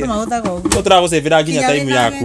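Speech: a man and a woman talking, with a held hum-like voice near the end.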